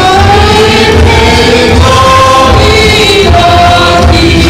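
A worship group singing a Mizo hymn together into microphones, amplified over band accompaniment with a pulsing bass.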